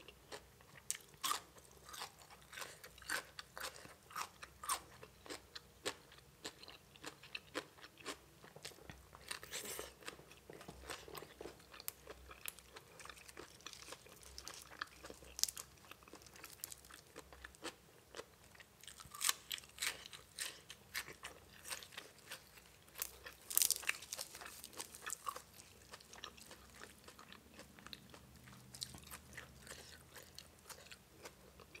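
Close-miked chewing of spicy papaya salad with raw vegetables: irregular crisp crunches and wet chewing, with the loudest bites about ten, nineteen and twenty-three seconds in.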